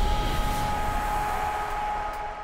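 Tail of an electronic intro sting: two steady high synth tones held over a wash of noise and low rumble, slowly getting quieter.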